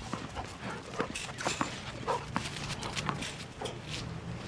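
Retrievers' paws and claws and a bouncing tennis ball tapping irregularly on a concrete training pad, with a few brief dog whines.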